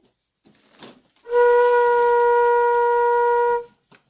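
Flute played by a beginner: a faint breathy puff, then one steady low note, Do, held for about two and a half seconds with an airy breath noise over it, cut off cleanly near the end.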